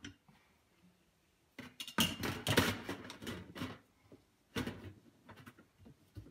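A screwdriver and parts knocking and clattering against a stainless-steel dishwasher tub: a run of knocks for about two seconds after a brief quiet start, then one more sharp knock and a few light ticks.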